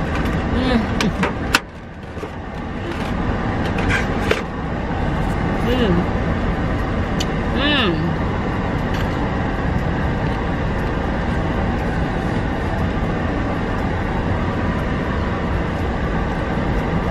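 Steady hum inside a parked car's cabin with the engine idling, a sharp click about a second and a half in, and a few brief hummed vocal sounds.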